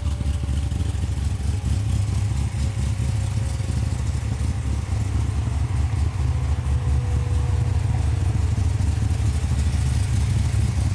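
Corvette Z06's 7.0-litre LS7 V8, fitted with a Late Model Racecraft 'Slayer' cam package and stock mufflers, idling steadily. The low exhaust note pulses unevenly.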